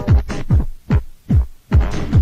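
Techno from a 1990s DJ mix tape, a kick drum with a falling pitch beating about two and a half times a second. About half a second in, the hi-hats and upper parts drop out and leave the bare kick. The full track comes back near the end.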